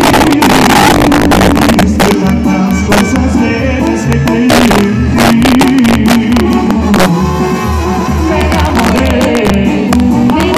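Mexican banda brass band playing live and loud: a sousaphone bass pulses steadily under the brass melody, with sharp drum hits throughout.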